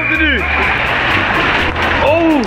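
Water rushing steadily out of a water slide tube's exit into the splash pool, under background music.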